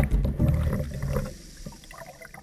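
Water churning and bubbling, heard from under the surface, fading away in the second half.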